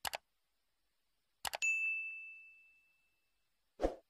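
Sound effects of an animated subscribe-button overlay: a sharp double mouse click, another double click about a second and a half later followed at once by a bell ding that rings and fades over about a second and a half, then a brief low whoosh near the end.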